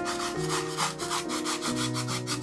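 A stiff bristle paintbrush scrubbing acrylic paint onto a wood slice, with rapid short strokes of several a second, over background piano music.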